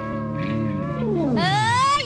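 Live stage band holding a steady chord, keyboard and guitar. In the second half one tone slides down while another glides steeply upward, a comic pitch-bend effect that ends loudest at the close.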